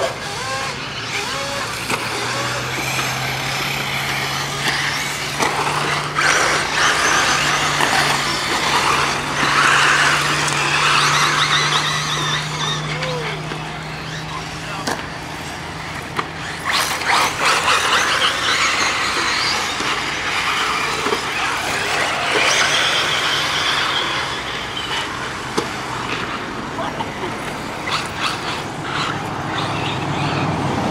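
Electric 1/8-scale RC buggies racing on a dirt track, their brushless motors whining and rising and falling in pitch as they accelerate and brake. A few sharp clacks come through, and a steady low hum runs underneath.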